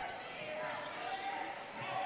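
Basketball being dribbled on a hardwood court, heard faintly and with echo, under the background of distant players' voices in the hall.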